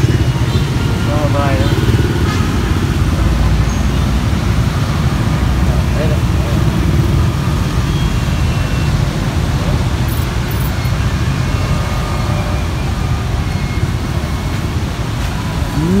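Steady low rumble of street traffic and motorbike engines, with faint voices now and then.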